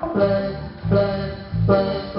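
Live reggae band playing, with electric guitars, bass and keyboard and chords struck about every 0.8 seconds, recorded from the audience.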